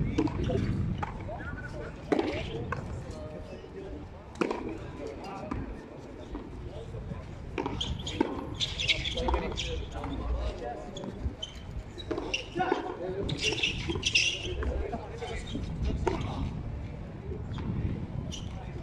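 Frontón a mano rally: the rubber ball is struck by hand and rebounds off the concrete front wall, sharp smacks every two seconds or so, with players' voices calling out between shots.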